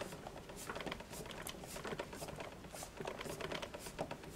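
Hands pressing and working a wood-mounted rubber stamp down onto paper and a paper towel: faint rustling with scattered light clicks and scrapes, several a second.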